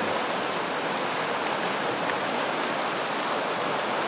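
River water rushing over a stony riffle of the Río Esva: a steady, even rush.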